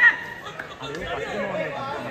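Overlapping voices of several people talking and calling out at once, with a brief loud sound right at the start.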